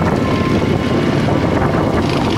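Suzuki V-Strom V-twin motorcycle riding a corrugated dirt road: a steady mix of engine, wind buffeting on the microphone and road rumble.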